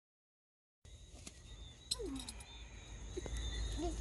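After nearly a second of silence, insects shrilling steadily in high tones over a low rumble, with a sharp click about two seconds in.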